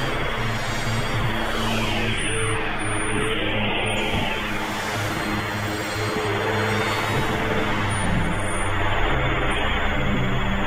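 Experimental synthesizer drone music: a dense, noisy, machine-like texture with sweeps that glide down and up every couple of seconds, over steady low droning tones.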